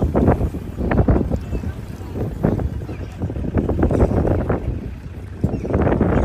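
Choppy water splashing and rushing against a moving boat's hull in irregular surges, with wind buffeting the microphone and a low steady hum underneath.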